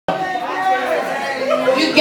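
Speech with crowd chatter: people talking in the room, with no music playing.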